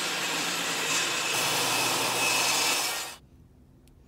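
Table saw ripping a thin layer off a block of hardwood turning stock to give it a flat face, a loud, steady cutting noise that cuts off suddenly about three seconds in.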